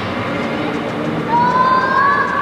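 Spectators' drawn-out rising shouts of encouragement over steady stadium crowd noise as wheelchair racers push away from the start of a 100 m race. The shout rises and is held from about halfway through.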